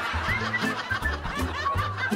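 Canned laugh track of snickers and chuckles over light comedic background music, with a repeating bass line and short high notes.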